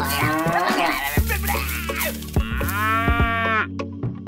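Cow mooing: several wavering calls, then one long drawn-out moo starting about two and a half seconds in, over a steady low hum with a few light knocks.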